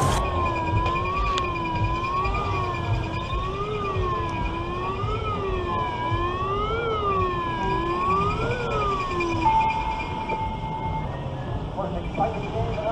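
A siren-like wailing tone rising and falling every second or two, then holding one steady pitch briefly before it stops, over a low rumbling noise.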